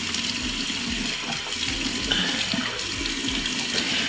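Bathroom sink tap running steadily while hands splash water onto the face to rinse off cleanser.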